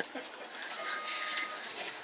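Low background noise at a shop counter with one short, steady beep starting just under a second in, like a register or card-terminal beep.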